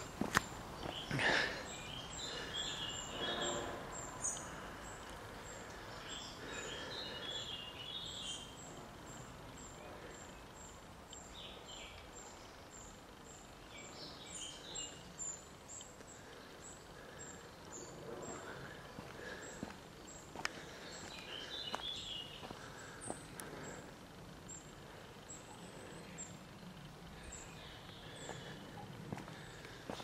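Quiet outdoor ambience: small birds chirping in short bursts every few seconds, with occasional faint footsteps of someone walking.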